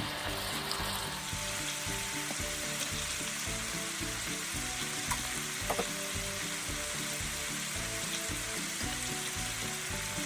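Ground beef and diced onions sizzling steadily as they fry in a hot skillet, with a wooden spoon stirring them and a couple of light clicks a little past the middle.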